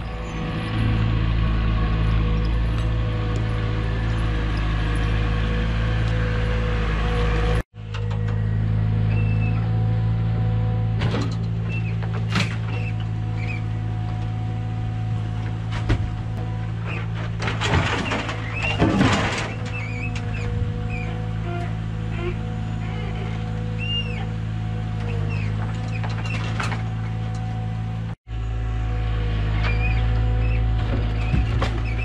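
Forestry forwarder's diesel engine running with a steady drone while its hydraulic crane unloads logs, with scattered knocks and a burst of clattering logs about 18 seconds in. The sound cuts out abruptly twice.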